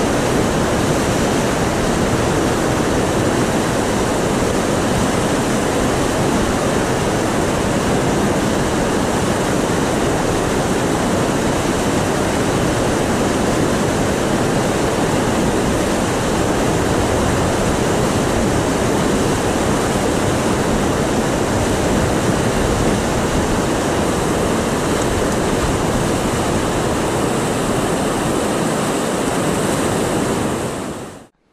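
Whitewater rapids rushing in a loud, steady wash close to the microphone.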